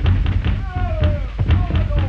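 Several knocks and thuds from a slapstick scuffle and a fall in a hallway, with music carrying falling notes over them.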